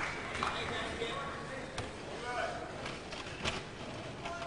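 Low murmur of an arena crowd with faint distant voices, and two sharp knocks, about two seconds and three and a half seconds in.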